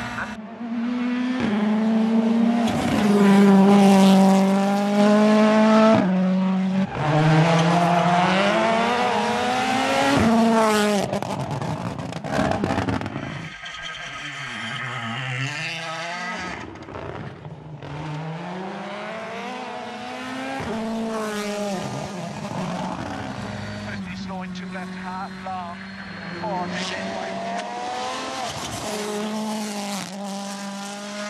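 Ford Puma Hybrid Rally1 rally cars' turbocharged four-cylinder engines at full throttle on a stage. The revs climb and then drop sharply at quick upshifts several times in the first half, with tyre noise, then settle into steadier hard running after a quieter stretch in the middle.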